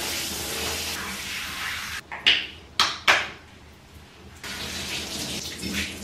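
Water spraying from a handheld shower head into a bathtub as hair is rinsed under it. The flow drops away a couple of seconds in, with a few short splashes, and runs again near the end.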